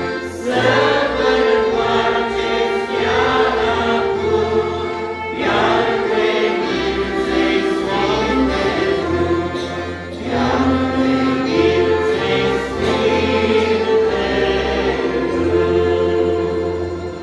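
A hymn sung by male voices with a small band of trumpet, clarinet, accordion, electronic keyboard and acoustic guitar, in phrases of about five seconds.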